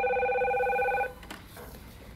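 Office desk phone ringing with a rapid electronic warble, cutting off about a second in.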